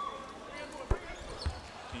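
A basketball hitting hard about a second in and again half a second later, over a steady murmur from the arena crowd.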